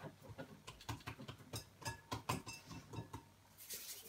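Hands working oiled bread dough in a ceramic mixing bowl: faint, irregular soft pats and clicks.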